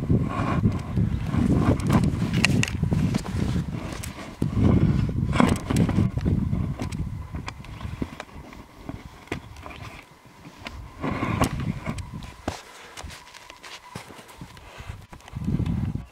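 Skis swishing and crunching through snow in a steady stride, with sharp clicks among the strokes, close to the microphone. The strokes come about once a second and grow fewer and quieter in the second half.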